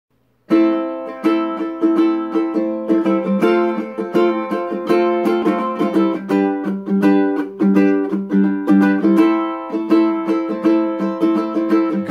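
Solo ukulele playing an instrumental introduction, chords plucked in a steady rhythm, starting about half a second in.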